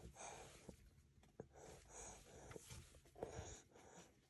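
Faint breastfeeding sounds of a baby: soft suckling clicks and quiet breaths recurring every half second to a second, in near silence.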